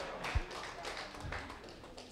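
Quiet room noise with a few soft taps and a short dull thump about a third of a second in.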